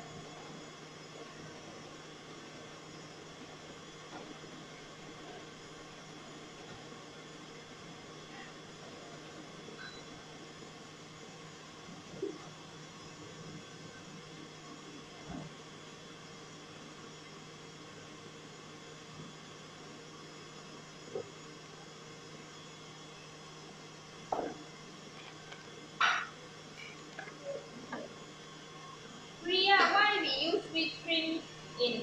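Stand mixer running steadily at high speed, whipping eggs and sugar, a low even hum. A few faint knocks come from a spoon working flour and cocoa through a mesh sieve.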